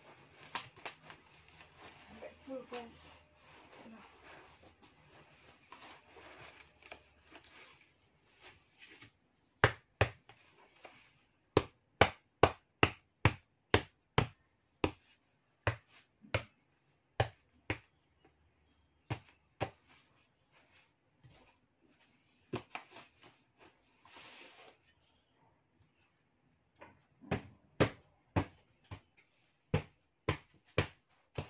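Hands patting and knocking on a cardboard box: after faint rustling, a long run of sharp knocks, roughly one to two a second, with a short pause near the end.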